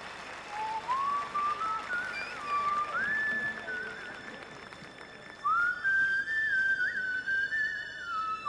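A person whistling a melody: notes slide up into place with small trills, in a first phrase and then, after a short pause, a higher second phrase.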